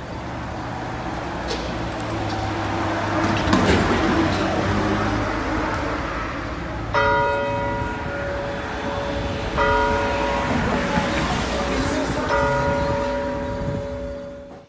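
Church bell struck three times, about two and a half seconds apart, each stroke ringing on until the next. A rushing noise comes before the first stroke.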